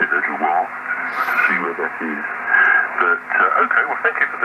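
A KW 2000B valve transceiver's loudspeaker playing a radio amateur's voice received on the 40 m band, thin and telephone-like, over a steady low hum.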